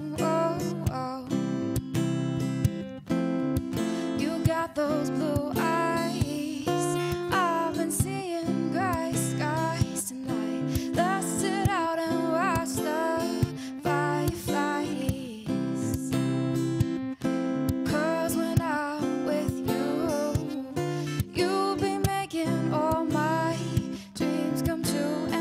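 A solo acoustic guitar strummed steadily, with a woman singing over it.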